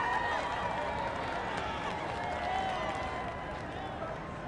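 Large crowd of many voices calling and cheering at once, overlapping into a dense din, easing off slightly toward the end.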